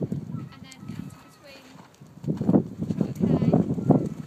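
Horse's hooves thudding on a soft rubber-and-sand arena surface, growing louder about halfway through as the horse comes close.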